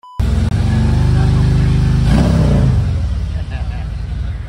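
A motorcycle engine held at steady high revs, then the revs drop away about two seconds in and the sound fades. It opens with a short test-tone beep.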